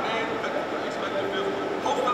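Speech only: a man's voice telling the team to expect a physical box-out and post-up game.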